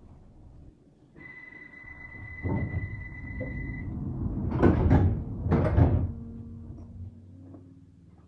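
London Underground 1972 stock train doors closing: a steady high door-warning tone sounds for about three seconds, then the sliding doors run shut with two loud thuds close together, followed by a faint low hum.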